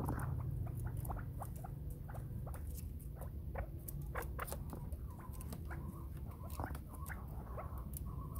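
Chukar partridges in a bamboo cage, making scattered light taps, scratches and short squeaks as they move and peck about, over a steady low rumble.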